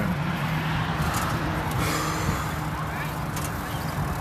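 Steady road traffic noise with a low, uneven rumble, with faint voices in the background.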